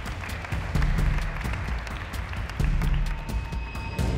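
A group of children applauding a name called in a selection, over background music.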